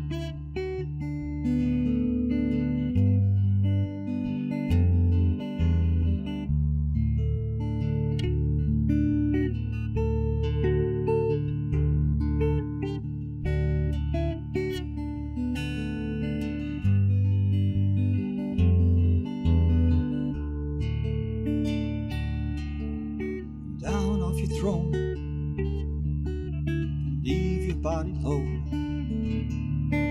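Solo hollow-body guitar played fingerstyle: an instrumental passage of picked melody notes over a thumbed bass line.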